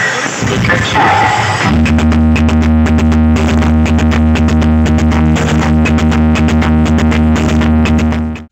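A large DJ box speaker stack playing loud electronic dance music. About a second and a half in, a deep, steady bass tone comes in under a fast, even beat.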